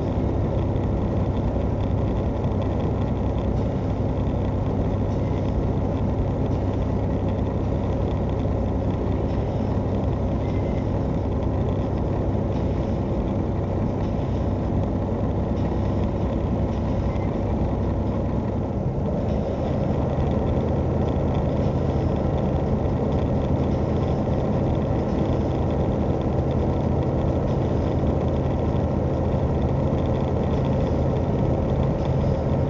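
Semi truck's diesel engine and road noise heard from inside the cab at highway speed, a steady drone. About nineteen seconds in the engine note shifts slightly higher and holds there.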